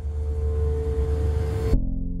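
Film-score sound design: a low rumbling swell with one held tone and a rising hiss above it builds, then cuts off sharply near the end, giving way to a low drone.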